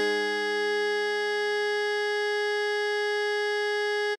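An alto saxophone holds one long, steady note, written F5 (concert A-flat), over a lower A-flat major chord that fades away within the first few seconds.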